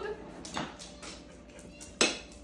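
A few light, scattered clinks of metal cutlery against dinner plates during a meal.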